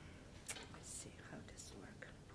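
Faint whispering close to the microphone, with one sharp click about half a second in.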